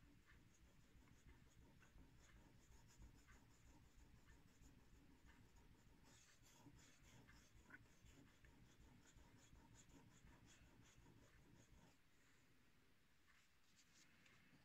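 Faint scraping of a hair shear blade worked in short strokes on a wet whetstone, with small ticks, grinding down the nicked tip; the strokes stop about twelve seconds in.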